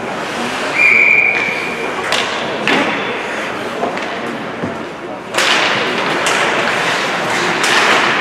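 Ice hockey rink sounds: a referee's whistle blast lasting about a second, then a few sharp stick or puck knocks. From about five seconds in, a sudden loud hiss of skates cutting the ice, with stick clacks, as play restarts off a faceoff.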